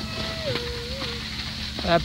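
Steady hiss with a single short falling hum-like vocal tone, then a man's voice starting to speak near the end.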